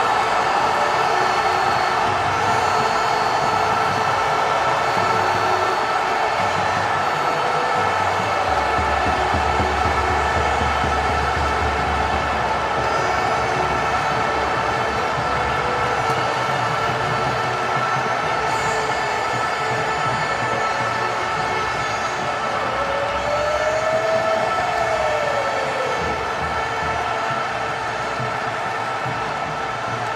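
A loud, steady din of many held horn-like tones over a rushing crowd-like noise. Near the middle a brief low hum joins it, and about 23 seconds in a single tone rises and then falls.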